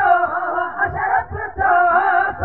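Man singing a Sindhi song into a handheld microphone, his voice amplified and loud.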